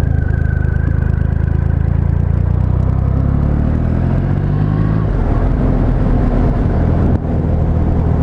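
2012 Triumph Rocket III's 2.3-litre inline-three engine running as the bike is ridden, its pitch shifting around the middle, with a brief drop in loudness about seven seconds in.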